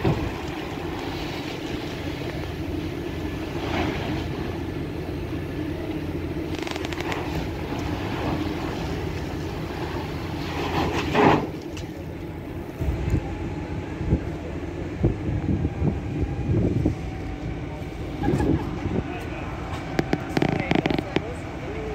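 A vehicle engine running steadily, with a short, loud burst of noise about eleven seconds in and scattered thumps in the second half.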